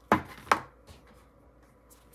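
Two sharp knocks about half a second apart, then a few faint clicks, as a small cardboard knife box is picked up and handled on a desk.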